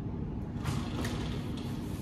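Fabric and plastic packaging rustling briefly as clothes are handled, about half a second in, over a steady low hum.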